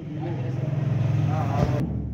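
A steady low engine hum, like a motor vehicle running close by, with people's voices over it; the hum cuts off shortly before the end.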